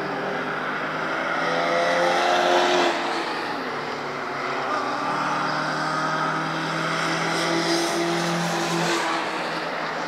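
Car engines accelerating through a bend of a race circuit: one note rises in pitch and drops off about three seconds in, then a second engine pulls steadily from about halfway and falls away near the end.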